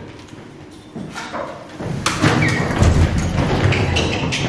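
Footsteps and thuds of several people rushing and jostling through a doorway, loud from about halfway in.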